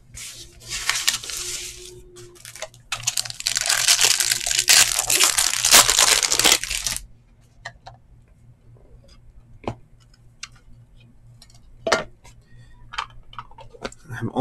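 Plastic card sleeve and clear top loader rustling and scraping against a trading card as it is slid in and put away, in two spells over the first seven seconds, followed by a few light clicks of card handling.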